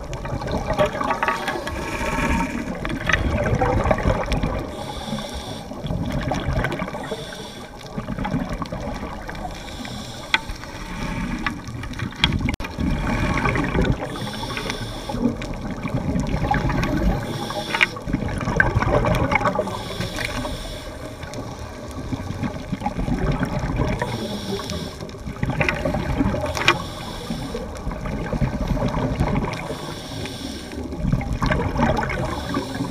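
Scuba diving regulator breathing underwater, with exhaled bubbles rushing and gurgling. The sound swells and fades in slow cycles every few seconds, with occasional sharp clicks.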